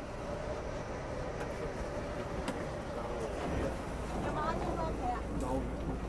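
Crowded subway car ambience: a general rumble and hiss of the train and station, with several passengers' voices chattering, clearer from about four seconds in, over a steady low hum.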